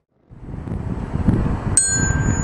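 A low wind rumble on the microphone rises out of a brief silence. About three-quarters of the way through, a single glockenspiel note is struck and rings on, bright and high.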